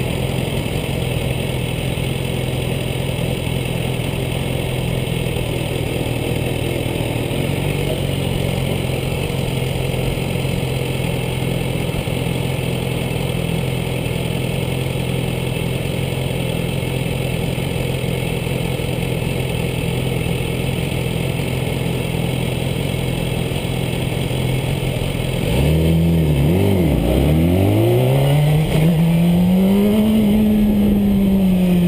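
BMW S 1000 RR's inline-four engine idling steadily. Near the end the revs rise and fall a couple of times, then climb as the bike pulls away.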